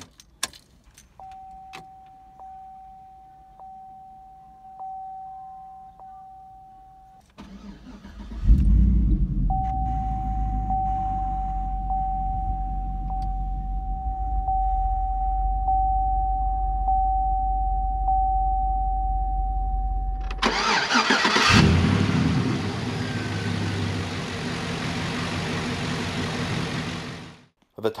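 A repeating warning chime sounds in the cabin of a 2004 Chevrolet SSR. About seven seconds in, the starter cranks briefly and the 5.3 L Vortec V8 catches with a loud surge, then settles to idle while the chime keeps repeating over it. About twenty seconds in, a louder, even rushing noise with a single knock takes over above the engine sound and cuts off just before the end.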